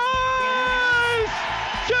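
A man's goal shout, one long held call lasting over a second, followed by a short burst of crowd cheering, over background pop music with a steady beat.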